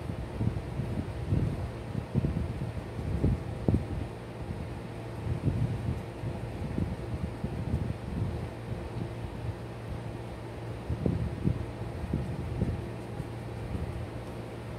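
Steady low room hum, like a fan or air conditioner, with irregular low rumbles and thumps throughout.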